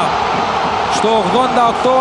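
Male television commentator calling a football goal in Greek ("3-1") over steady stadium crowd noise.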